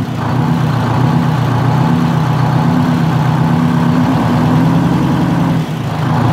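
Large engine of a Walter RDUL truck running steadily, firing on only seven cylinders because the fuel lines to one injector were left off. Its speed rises slightly about four seconds in, with a brief dip near the end.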